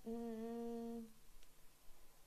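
A woman's drawn-out hesitation filler, a held 'yyy' on one steady pitch, lasting about a second before it stops.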